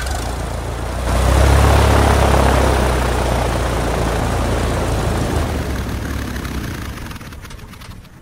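Propeller aircraft engine sound effect: a low, steady engine drone under a wide whirring rush of the propeller, swelling about a second in and fading away near the end.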